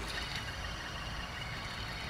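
Serpentine belt tensioner pulley spun by hand, its bearing whirring steadily as it freewheels. It still turns freely but runs quite loud, a sign of a noisy, dry bearing that may want greasing or replacing.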